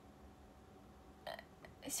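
Faint room tone, then a short breathy sound from a young woman about a second in, and the start of her spoken word near the end.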